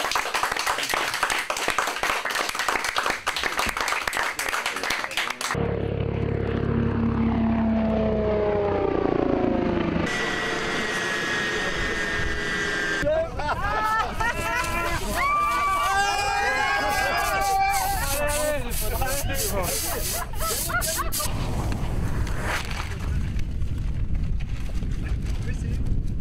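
A dense burst of cheering and clapping, then the Eurocopter X3's turbine engines and rotor running down, a rumble with a whine falling in pitch, followed by a few seconds of steady turbine whine. From about thirteen seconds in, people shout, whoop and cheer in celebration.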